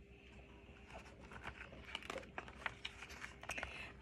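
Faint page turning and handling of a picture book: soft paper rustles and light clicks, growing busier from about a second in.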